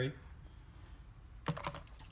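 Clear plastic tackle box being handled and its lid opened: a few quick clicks and knocks close together near the end.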